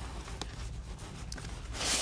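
Gear being handled inside a camera bag: soft rubbing of fabric, with a light click about half a second in. The rubbing grows louder near the end.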